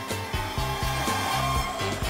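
Background music with a steady low beat, over which an electric metro train pulling into the station makes a rushing noise and a slowly falling whine.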